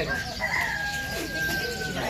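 An animal call: one long held note lasting about a second and a half, rising briefly at its start and then steady.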